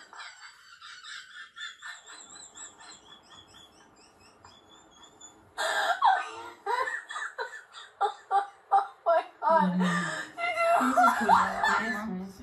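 Laughter mixed with speech, starting suddenly about halfway in and coming in quick pulses that grow louder near the end.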